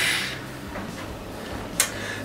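A pause between speech: faint room tone, with the end of a hissing sound fading out at the start and one short hiss near the end.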